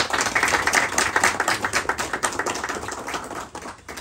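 Audience applauding, a dense patter of many hands clapping that fades away near the end.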